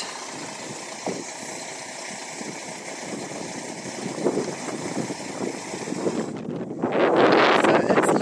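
A concrete truck's diesel engine running steadily. About six and a half seconds in the sound breaks off and a louder rushing noise takes over.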